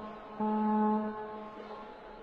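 A flat, steady buzzer-like electronic tone sounding in short repeated notes about half a second long, roughly once a second, then fading away.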